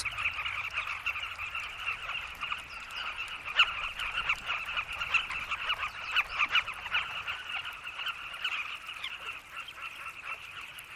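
A colony of carmine bee-eaters calling, many short calls overlapping into a dense, continuous chorus.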